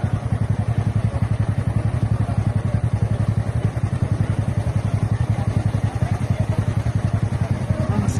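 A motorcycle engine running steadily at idle close by, a low sound with a fast, even pulse.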